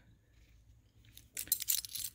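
A cat's metal collar tag clinking against its ring as the cat is rubbed: a short run of light jingles beginning about a second and a half in.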